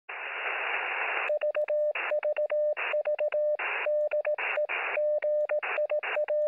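Radio static hiss for about a second, then Morse code: a single-pitch tone keyed in short and long beeps, heard through a radio receiver, with bursts of static filling the pauses between characters.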